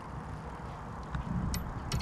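Steady low rumble of wind on the microphone, with a few faint clicks in the second half.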